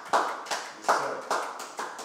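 Hands clapping in a steady rhythm, about two to three claps a second.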